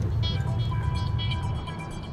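Background music of sustained, held tones over the steady low rumble of a moving car's engine and road noise inside the cabin.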